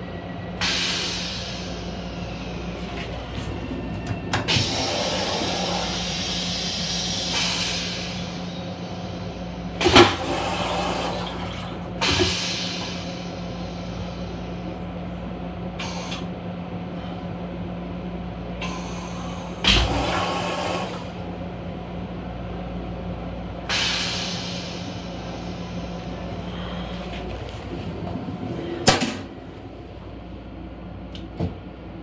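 Interior running noise of a Metro-North M7 railcar: a steady hum over a low rumble, broken every few seconds by sudden rattles and hissing bursts that fade away. The hum cuts out near the end.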